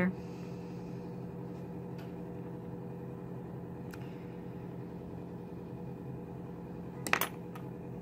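A small metal sculpting tool clicks and clatters briefly on a wooden tabletop about seven seconds in, with a few faint ticks before it. A steady low hum runs underneath.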